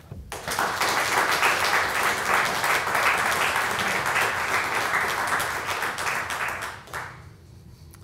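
Audience applauding: a small crowd's steady clapping that starts just after the opening and dies away about seven seconds in.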